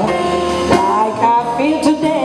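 A female jazz singer singing live with a jazz band accompanying her.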